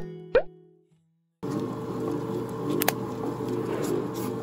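Two quick rising 'bloop' sound effects, then a short silence; about a second and a half in, a large stand mixer starts up, running steadily as its beater churns clay in a steel bowl, with a regular low churning rhythm and one sharp click near the end.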